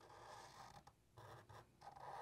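Faint scratching of a Sharpie marker drawing lines on paper, in a few short strokes with brief gaps between them.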